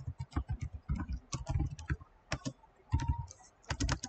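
Typing on a computer keyboard: quick, irregular runs of keystrokes with a short pause a little past the middle.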